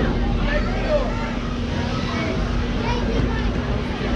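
Overlapping chatter of spectators, several voices at once with none standing out, over a steady low hum and a continuous low rumble.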